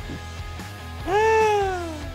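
A long meow about a second in, rising briefly and then falling slowly in pitch for about a second, over steady background music.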